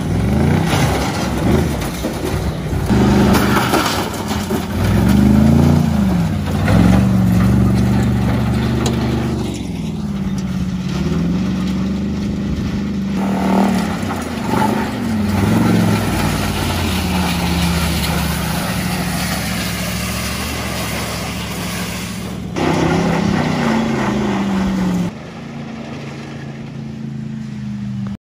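Truck engine running and being revved, its pitch rising and falling again and again, with sudden changes near the end.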